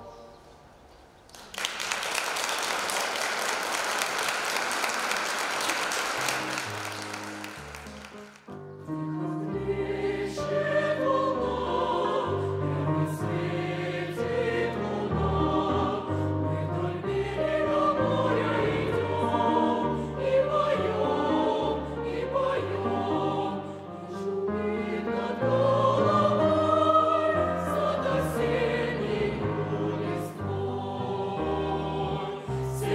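A mixed choir's held closing chord fades out, followed by about six seconds of audience applause. After a short pause the choir starts a new piece, singing in several parts with a deep bass line beneath.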